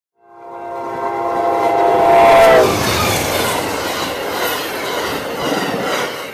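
Passing train's horn sounding one long chord that drops in pitch as the train goes by, about two and a half seconds in, then the steady rush and rumble of the train passing a level crossing.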